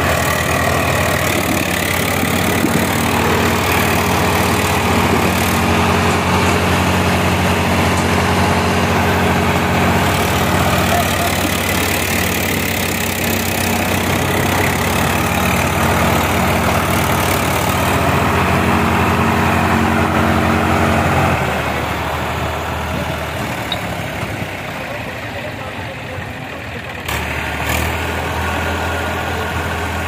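Eicher 480 tractor's diesel engine running hard under load as it tows another tractor by chain, its rear tyres digging into the dirt. The steady engine note drops and grows quieter about two-thirds of the way through, then picks up again near the end.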